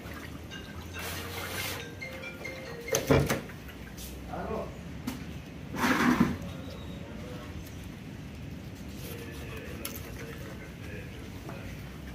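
Hands sloshing in water in a plastic basin, then a sharp knock just after three seconds and a knife cutting into a whole fish on a metal table, loudest around six seconds in. Faint background music runs underneath.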